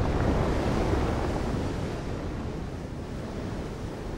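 Ocean surf: a steady rush of waves washing on a beach, easing slightly in level.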